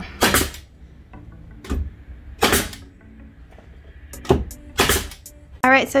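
Pneumatic brad nailer firing about five times at uneven intervals, driving nails through an MDF shelf topper down into a 2x4. Each shot is a sharp crack, and three of them are louder with a short tail.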